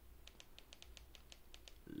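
Faint clicks of a TV remote's buttons pressed in quick succession, about a dozen in a second and a half, stepping the cursor across an on-screen keyboard.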